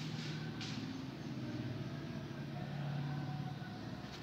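Steady low background hum with a faint motor-like drone, and a brief rustle about half a second in.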